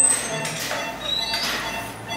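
Quiet speech with soft background music.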